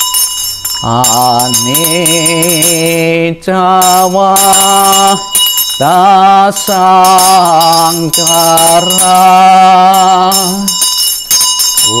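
A man chanting a Buddhist memorial verse in long, wavering sung notes, in several phrases with short breaths between, while a small bell rings over it again and again.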